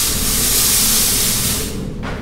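Smoke machine blowing a burst of smoke: a loud hiss that starts suddenly and fades out after almost two seconds, over a low rumble.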